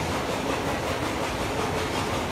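Steady rushing background noise, even and unbroken, with no distinct events.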